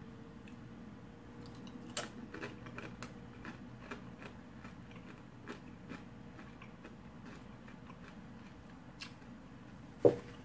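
Tortilla chips being bitten and chewed, crunching softly. There is a quick run of crisp crunches about two to four seconds in, then a few sparser ones.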